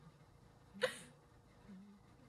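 A single quick, sharp breath from a woman, like a hiccup, a little under a second in, with only a faint low tone near the end.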